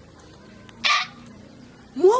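A single short, breathy hiss, about a quarter of a second long, about a second in, within an otherwise quiet pause in a woman's speech.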